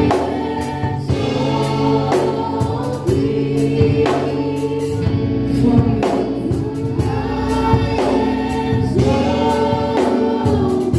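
Gospel choir music: voices singing long held chords over a light, steady beat.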